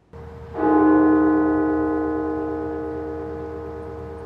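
A single stroke of the Washington National Cathedral's church bell about half a second in, ringing on with many overtones and slowly dying away. It is one of the tolls rung in mourning for 300,000 COVID-19 deaths.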